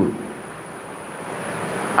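A steady rushing background noise with no distinct pitch, slowly growing louder toward the end, with a faint high whine running through it.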